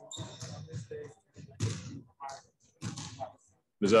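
Quiet, indistinct talk away from the microphone, in short bursts.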